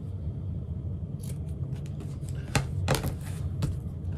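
Fabric scissors snipping through marked-out vinyl along its traced line, a string of sharp snips starting about a second in, with the loudest few in the second half, over a steady low hum.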